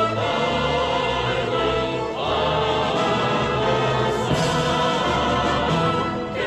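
A choir singing with a string orchestra, held chords that change about every two seconds.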